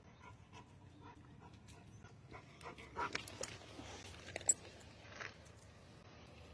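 Faint, irregular crunching and rustling of footsteps and movement on dry leaves, twigs and dirt, with a sharp click about four and a half seconds in.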